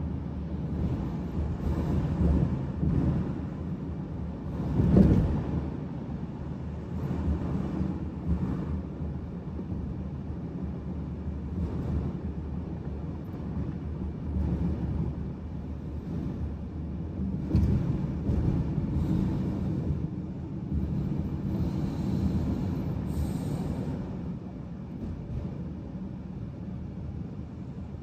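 Car cabin noise while driving at highway speed: a steady low rumble of tyres and engine heard from inside the car, with a brief louder surge about five seconds in.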